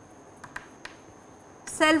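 A few faint, sharp clicks during a pause in speech, then a lecturer's voice beginning a word near the end, the loudest sound.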